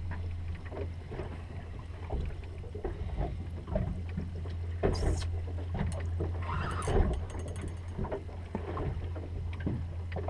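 Water slapping and knocking against the hull of a small fishing boat drifting with its engine switched off, in irregular small splashes and knocks over a steady low hum.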